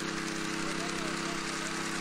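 A 36-inch MBW walk-behind power trowel's small gas engine running at a steady speed as its blades work the fresh concrete slab.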